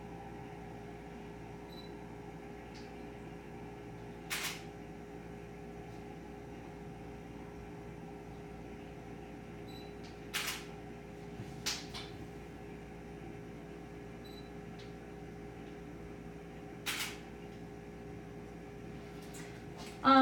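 DSLR camera shutter firing four times, sharp single clicks several seconds apart, with a few fainter clicks and faint short high beeps between them, over a steady low room hum.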